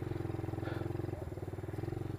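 Small single-cylinder pit-bike motorcycle engine running steadily under way, a fast even putter heard from the rider's helmet.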